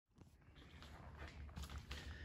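Quiet shop room tone: a faint steady low hum with scattered light clicks and rustles.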